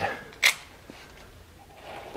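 A single short, sharp click about half a second in, followed by a low, steady background.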